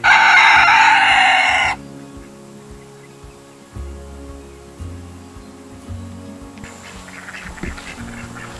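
A rooster crowing loudly for under two seconds, cut off abruptly, over background music.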